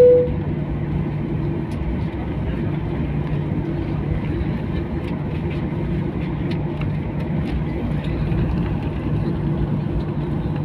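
Steady jet airliner cabin noise heard from a window seat while the plane taxis slowly: a constant engine hum over a low rumble, with a few faint clicks in the second half. A loud steady beep cuts off just after the start.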